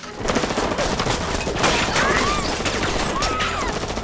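Movie gunfire: rifles firing a long, rapid volley of overlapping shots that starts a moment in. A few brief whistling whines come in the middle.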